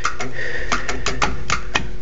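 Horn button on a Chevrolet C10 pickup's steering wheel clicking as it is pressed over and over, about five clicks a second, with no horn sounding because the horn is unplugged. A steady low hum runs underneath.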